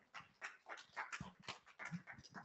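Quiet room tone in a pause between speakers, with a few faint, scattered short sounds.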